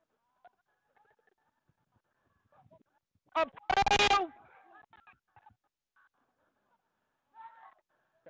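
A short, loud high-pitched cry close to the microphone about three and a half seconds in, falling at the end, over faint distant shouts from players.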